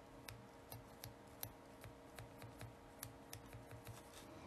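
Faint, irregular light clicks, about three or four a second, from a sponge dabber pressing white paint gel through an adhesive stencil onto a nail, over a faint steady hum.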